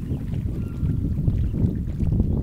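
Wind buffeting the microphone in a low, uneven rumble, over faint splashing of a dog paddling as it swims.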